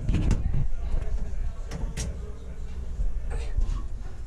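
A few sharp knocks and clatters from handling inside the cab of a parked military truck, over a low rumble.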